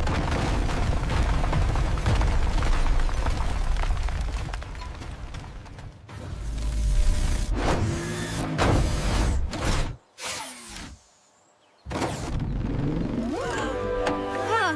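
Cartoon sound effects of a heavy rumbling crash, as of a pile of boulders and scrap metal collapsing, loud at first and fading over about five seconds. A second rumble follows with a few sharp whooshes, then a brief moment of near silence. Music with rising and falling tones starts near the end.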